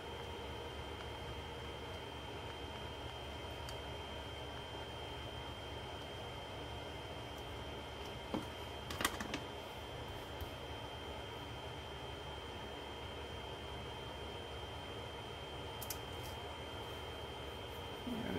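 Quiet room tone: a steady low hum and hiss with a thin high whine, broken by a few faint, brief handling sounds of small craft tools and paper about eight to ten seconds in and again near the end.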